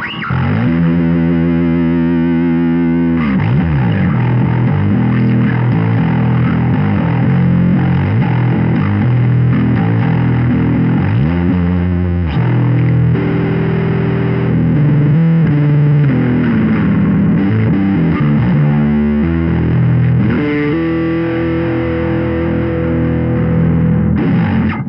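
Ibanez SR500E four-string electric bass played fingerstyle through a drive pedal: a continuous distorted riff with a few sliding notes.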